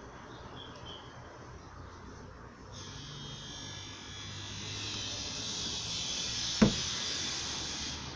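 Pliers wrapped in a cloth prying the metal trim strip off the outer window edge of a Tofaş car door: a scraping, rustling noise that grows louder from about three seconds in, then a single sharp snap a little before the end as the strip pops loose.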